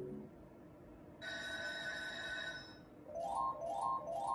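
Electronic sound effects from a Merkur 'Lucky Pharao' slot machine: a steady bell-like ring for about a second and a half, then from about three seconds in a string of short rising chime runs as a line win is tallied.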